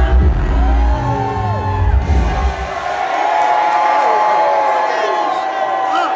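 Live hip-hop track with a heavy bass beat playing loud through a concert PA; the beat cuts out about three seconds in, leaving the crowd cheering and whooping.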